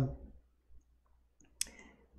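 A single short, sharp click about one and a half seconds in, over near silence with a faint low hum.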